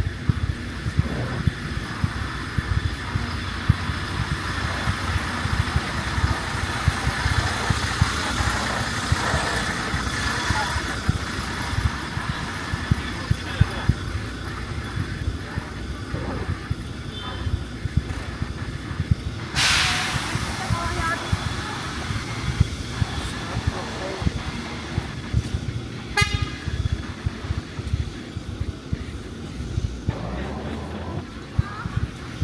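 Busy city-street ambience: steady traffic, passers-by talking, and footsteps on the pavement. A short, loud hiss comes about twenty seconds in.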